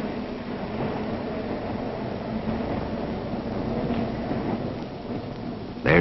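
A steady rumbling noise with no distinct events, spread from deep rumble to hiss.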